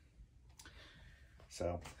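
Faint clicks and a soft rustle from a cardboard action-figure box being handled and set down.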